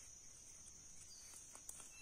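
Near silence outdoors with faint, steady, high-pitched insect chirring, and a few faint ticks in the second half.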